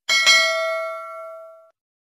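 Notification-bell ding sound effect: a bright bell chime struck twice in quick succession. It rings on and fades away within about a second and a half.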